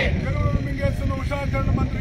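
A single man's voice leading a protest slogan chant, the call that the seated crowd answers in unison just before and after. A steady low rumble runs underneath.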